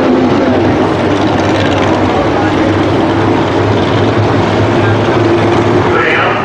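Dirt-track modified race car engines running together as the cars circle the track: a loud, steady drone.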